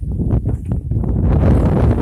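Wind buffeting the microphone: a loud, low rumbling noise that grows stronger about a second in, with a few faint clicks in the first second.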